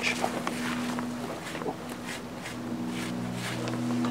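A trowel scraping through loose sand in a trench base, a few faint short strokes, over a steady low hum.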